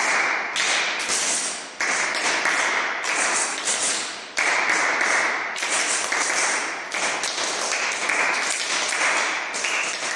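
Young children clapping their hands in a hand-clapping game, a dense run of claps that shifts in loudness every second or so.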